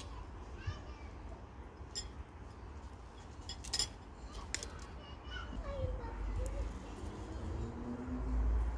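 Handling noise: a few sharp clicks and light clinks as flowering dill stems are snapped and a large glass pickling jar is touched, over a steady low rumble. Faint distant voices are heard in the background in the second half.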